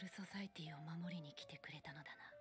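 Quiet anime dialogue: a voice speaking softly in Japanese over faint, sustained background music tones.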